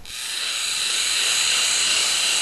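A loud, steady hiss that starts abruptly and builds over about a second, then holds, with its energy high in pitch.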